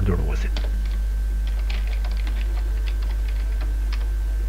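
Computer keyboard keys clicking in quick, irregular strokes as a word is typed, over a steady low hum.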